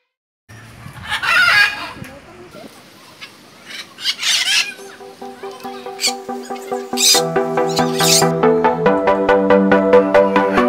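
Two loud bird calls, about a second in and again about four seconds in. Background music with a steady beat comes in about halfway and gets louder near the end.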